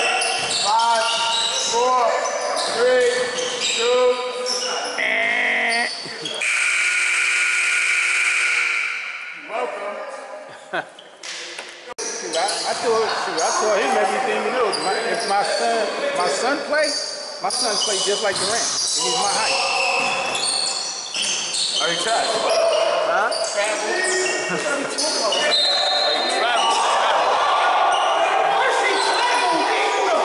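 Basketball game in a large gym: the ball bouncing on the hardwood and players' voices echoing through the hall. About six seconds in, a steady held tone sounds for about three seconds.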